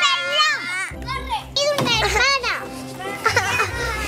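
High-pitched children's voices calling and squealing with quickly rising and falling pitch, over background music.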